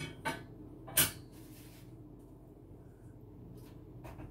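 Kitchen handling sounds at the stove: a couple of light knocks, then one sharp clack about a second in as things on the stovetop are picked up and put down.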